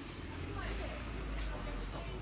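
Faint background voices over a steady low hum, with a single sharp click about a second and a half in.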